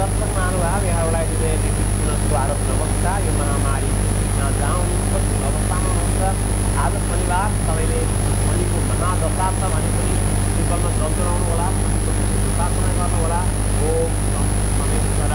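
A man talking steadily over a constant low hum and a faint high steady whine.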